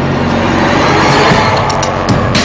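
A loud noise swell, a dramatic sound effect that builds gradually under the soundtrack's low steady drone and leads into tense background music.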